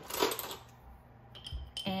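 Pieces of sea glass dropped into a glass mason jar, a short clinking rattle just after the start, then a few faint handling clicks near the end.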